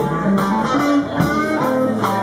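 Live blues band playing an instrumental passage between sung lines: electric guitar notes, some bent, over an electric bass line, with regular cymbal strokes.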